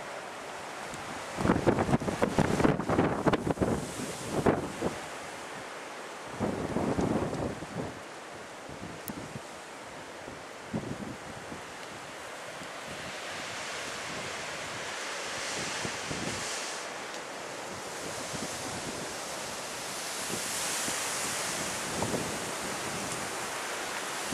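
Storm wind gusting through trees and bushes, with heavy gusts buffeting the microphone in the first few seconds, then a steadier rushing that swells twice towards the end.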